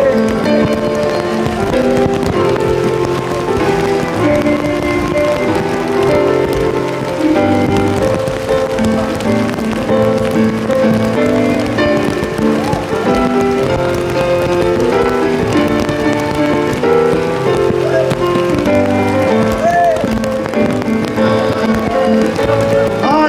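Live reggae band playing a passage with no lyrics sung, held chords over a moving bass line.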